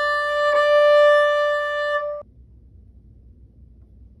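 Violin bowing a steady, firm D on the A string, played with the first finger in third position as the destination note of a shift up from B; it stops abruptly a little over two seconds in.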